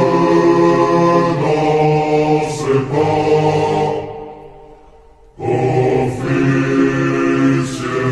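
Choir singing a French military promotion chant in unison, slowed down and heavy with reverb. The voices die away about four seconds in and come back abruptly a little over a second later.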